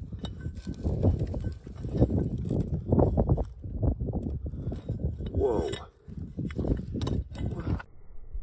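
Irregular knocking, clatter and scraping as a bullet-pocked aluminum block is handled and turned over on stony ground.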